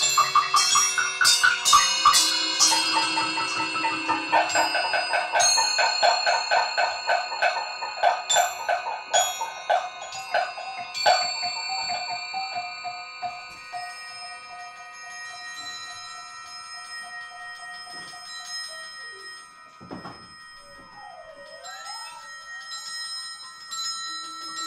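Pitched mallet percussion in a free improvisation: quick, irregular runs of struck notes that ring over one another, thinning after about 11 seconds into a few long ringing metallic tones. Near the end, wavering sliding pitches weave over the ringing.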